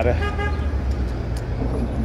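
A vehicle horn gives one short toot of about half a second over the steady low rumble of street traffic.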